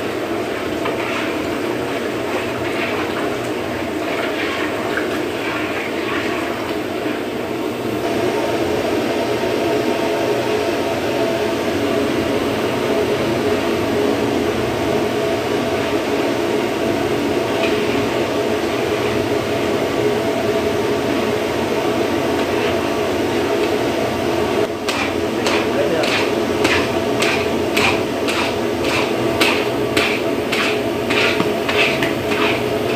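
Milk boiling and frothing in a large iron kadhai, a steady bubbling rush, while a long metal ladle stirs it. Near the end the ladle scrapes and knocks against the pan about twice a second.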